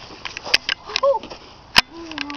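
Several short, sharp clicks and knocks, the loudest one near the end, with a brief wordless vocal sound about halfway through.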